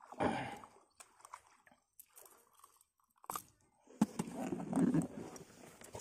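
Handling noise: cloth rustling and light knocks close to the microphone. There is a short burst just after the start, a few faint clicks, then a longer jumble of rustling and clicks in the last two seconds.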